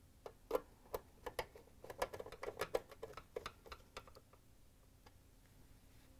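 Quarter-inch nut driver turning a hex-head screw into the sheet-metal bracket of a dishwasher control board tray: a faint, irregular run of small metallic ticks and clicks for about four seconds, then stopping as the screw seats.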